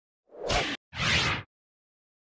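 Two short whoosh sound effects in quick succession: the first swells and ends about three-quarters of a second in, and the second, a little longer, follows right after. There is dead silence between them.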